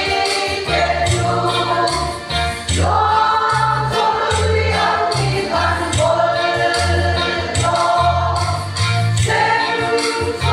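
Women's choir singing a Mizo gospel hymn in unison and harmony, holding long notes in phrases that change every second or so.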